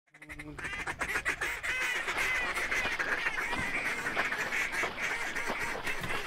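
A flock of geese honking and clucking, many calls overlapping into a dense, continuous chorus that fades in over the first second.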